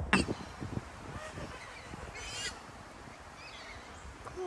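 Ducks quacking: a loud harsh call just after the start, then fainter calls, with another about two seconds in.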